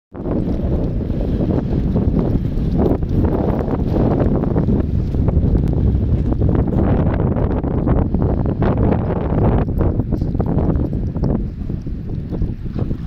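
Strong wind blowing across the microphone: a loud, uneven low rumble with crackling gusts.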